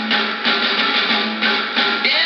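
Country song with guitar and a drum beat playing through the small speaker of a restored 1937 Emerson AL149 tube radio, with little deep bass.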